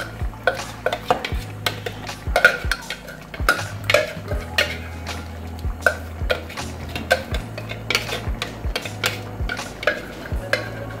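Spoon knocking and scraping against a blender jar as thick blended paste is tapped out into a cooking pot: a string of sharp irregular clicks, about two a second, over a low steady hum.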